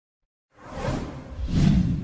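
Whoosh sound effects for an animated logo: silent for the first half second, then two swishes, the second and louder one about a second and a half in.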